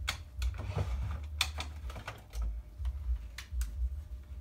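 Several irregular sharp clicks and taps over low thuds: a person moving about a room and handling small objects.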